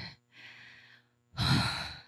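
A woman sighing into a handheld microphone: a faint intake of breath, then a loud, breathy exhale about a second and a half in.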